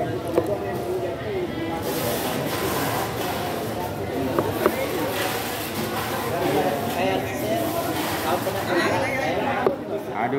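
Voices of several people talking in the background, with a few sharp knocks of a cleaver on the cutting board.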